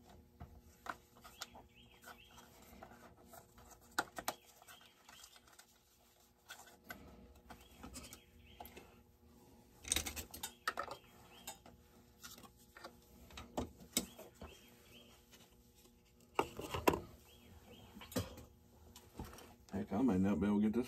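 Scattered light clicks, clinks and knocks of the plastic and metal parts of a RedMax GZ360 chainsaw and of hand tools being handled on a workbench during its teardown, with a few louder clusters of knocks.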